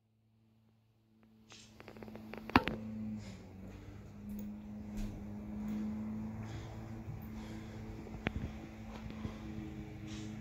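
A low steady hum with scattered knocks and clicks from someone moving about, the loudest knock about two and a half seconds in. The first second is silent.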